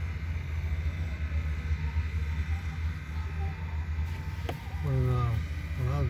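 Low, steady rumble of a vehicle's engine heard from inside its cabin. A single sharp click comes about four and a half seconds in, and a voice starts briefly near the end.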